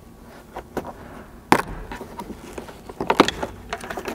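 Plastic trim clips snapping free as an overhead interior trim panel is pried and pulled down: a few light clicks, a sharp snap about a second and a half in, then a cluster of clicks and plastic rattling near three seconds in.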